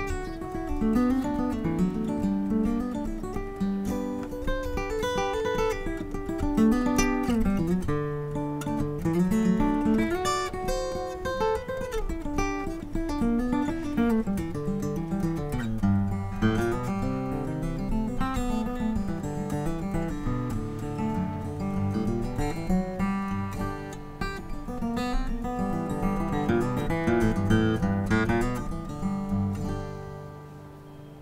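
Taylor K24ce Builder's Edition acoustic guitar, with a solid koa top, played solo: single-note melodic lines moving over chords, and the playing stops at the very end.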